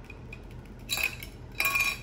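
Two short clinks of hard plastic, about a second in and again near the end: a card in a rigid plastic top loader being set into a clear plastic display stand.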